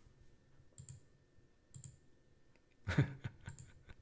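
A few faint, separate clicks from a computer mouse, then a short chuckle about three seconds in.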